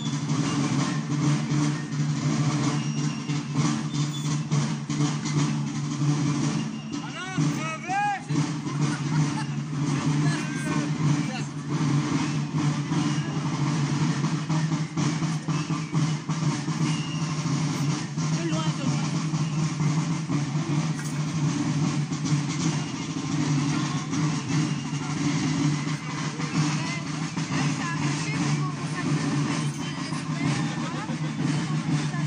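A uniformed folkloric march procession passing in the street: a steady clatter of drumming and marching steps over a constant low hum, with voices mixed in.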